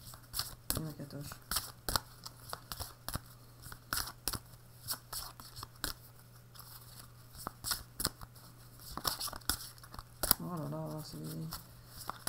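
Oracle cards being shuffled by hand: irregular quick clicks and flicks of card stock.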